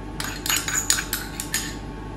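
Metal spoon clinking and scraping against small steel pots as celeriac remoulade is spooned into a metal ring mould: a quick run of light clinks.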